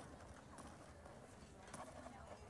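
Near silence: faint cafeteria room tone with a soft background murmur and a few light clicks, one near the end.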